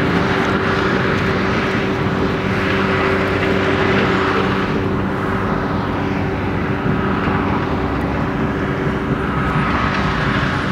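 A heavy machine's engine running steadily, with a constant low hum under a wash of noise.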